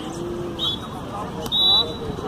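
Referee's whistle at a beach handball match: a short blast about half a second in, then a longer, louder blast about a second later, over background crowd voices.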